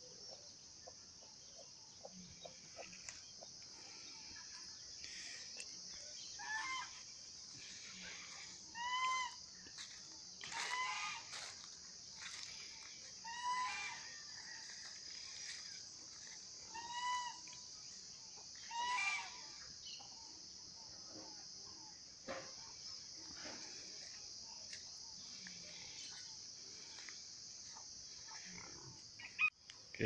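Chickens calling in a farmyard: about six short, arched calls come at intervals of a few seconds, over a faint steady high-pitched buzz.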